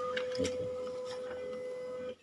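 HP LaserJet M1005 MFP laser printer running as it delivers a copy, a steady motor whine. A higher second tone drops out just after the start.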